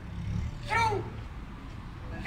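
A single short, high squeal from the street clown, rising then falling in pitch, about a second in, over a low traffic rumble.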